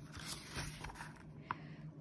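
A paper page of a thin paperback picture book turned by hand: a faint rustling slide of paper, with a brief tick about one and a half seconds in.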